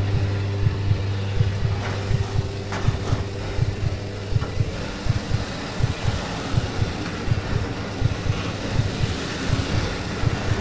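Aircraft engine drone heard from inside the cabin in flight: a steady low hum with irregular low buffeting thumps running through it.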